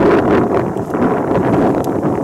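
Steam locomotive, Norfolk & Western 4-8-0 No. 475, running toward the microphone, its sound heard as a loud, steady rush mixed with heavy wind buffeting the microphone.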